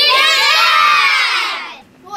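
A class of young children shouting together in one long, loud cheer that fades away near the end.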